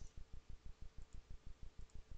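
A rapid, even train of low clicks, about ten a second, running steadily. Two fainter, sharper clicks come about a second in and near the end.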